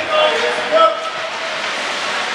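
A loud, drawn-out shout from a voice, peaking twice within about the first second, over a steady wash of rink and crowd noise.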